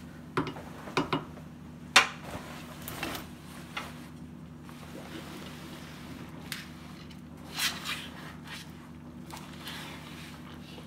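Wet clothing being pushed down into a large aluminium stockpot of hot dye water with a spatula: a string of short sloshes, squelches and knocks, the loudest about two seconds in.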